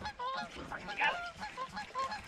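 Geese honking: a run of short calls, several a second, over faint background hiss.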